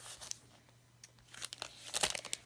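Clear plastic craft packaging crinkling as it is handled: a faint rustle at first, then a few sharper crackles near the end.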